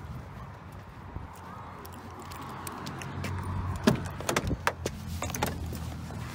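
Keys jingling and a quick run of clicks and knocks as someone opens a pickup truck's door and climbs into the cab, over a steady low hum. The clicks and knocks bunch together from about four to five and a half seconds in.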